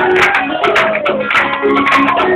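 Live acoustic band music with rapid percussion strokes and pitched instruments, heard from the audience; a single note slides down in pitch over about a second in the first half.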